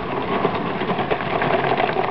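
A 1/8-scale radio-controlled T-55 tank driving by, its tracks clattering rapidly over a steady mechanical running sound.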